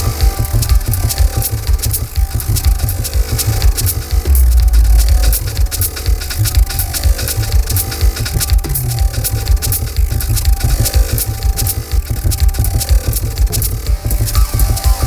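Experimental techno/IDM electronic music: deep pulsing bass under rapid, fine ticking percussion, with a held deep bass note about four seconds in as the loudest moment.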